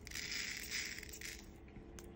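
Small resin diamond-painting drills poured and rattling into a ridged plastic tray, a light hissing patter for about a second, then fading, with a single click near the end.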